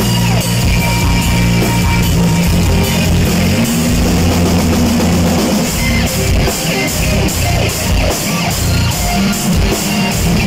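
A live heavy metal band playing loudly: electric guitar over a drum kit, with cymbals keeping a steady, even beat.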